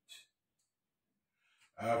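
Near silence between sung phrases: a short, faint intake of breath just after the start, then the singing voice comes back in on a held note near the end.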